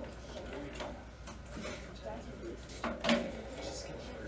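Classroom room sound: a low, indistinct murmur of voices with a few faint clicks, and one sharper knock about three seconds in.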